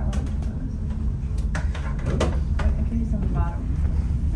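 Steady low rumble inside a Portland Aerial Tram cabin as it runs along its cables, with a few sharp clicks.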